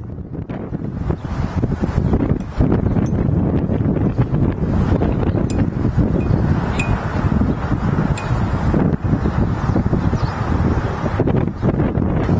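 Wind buffeting the camera's microphone outdoors: a steady, fairly loud rumbling noise that fades in at the start.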